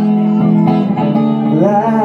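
Electric guitar strummed, its chords ringing between sung lines, with a man's singing voice coming back in near the end.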